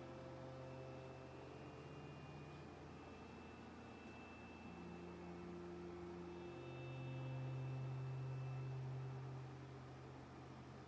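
Faint instrumental backing-track intro: quiet sustained chords changing every second or two over a low steady hum, swelling slightly about seven seconds in.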